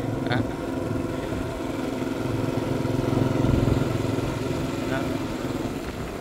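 Motorbike engine running steadily at an even speed while being ridden along the road.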